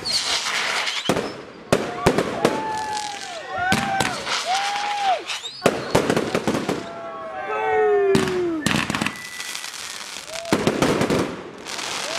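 Consumer firework barrage cake firing a rapid series of sharp bangs as its shots launch and burst, with a crackling haze between the reports.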